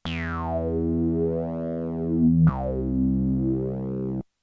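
TAL J-8 software synthesizer, an emulation of the Roland Jupiter-8, playing its 'Funky Jam I' preset. It plays two low held tones, the second starting about two and a half seconds in, and each opens with a bright resonant filter sweep falling in pitch.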